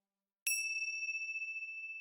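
A single bell-like ding, struck about half a second in, its clear high tone ringing on and slowly fading.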